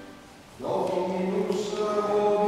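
A church organ's chord dies away, and after about half a second of near quiet, voices begin singing Ambrosian chant in Latin.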